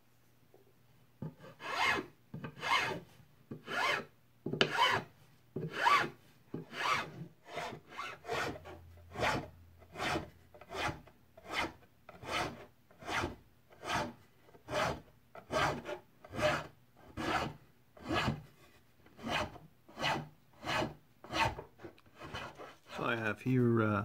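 A triangular metal file rasping back and forth over a carved wooden walking stick, shaping and rounding the diamonds of a quilted pattern. The strokes come in a steady rhythm of about one and a half a second, starting about a second in.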